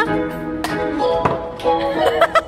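Background music with a steady melody, with two sharp knocks, one about half a second in and one a little over a second in.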